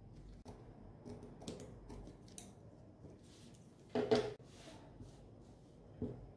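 Scissors snipping through cotton fabric: a series of short, quiet cuts over the first three seconds or so. A brief louder vocal sound comes about four seconds in.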